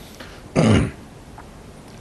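A man clearing his throat once, a short rough burst.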